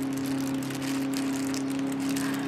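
Tie-dye squeeze bottle squirting liquid dye into a soaked cotton shirt, a wet crackling and spattering as the dye soaks in and drips. A steady low hum runs underneath.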